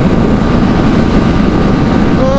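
Yamaha R15 V3 motorcycle riding at speed, its engine running steadily under heavy wind noise on the microphone.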